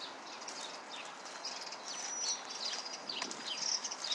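Small birds chirping with many short, high calls, one of them a thin held whistle about halfway through, over a steady outdoor background hiss.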